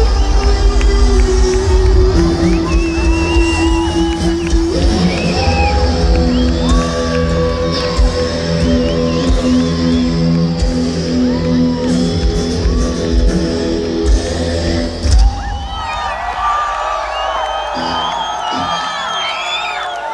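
A heavy metal band playing live through a stadium PA: distorted electric guitars and bass hold long ringing chords over crashing drums, closing out a song with a final hit about fifteen seconds in. A stadium crowd then cheers, whoops and whistles.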